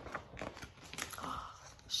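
Paper pages of a picture book being turned and handled: a few short, soft rustles and crinkles.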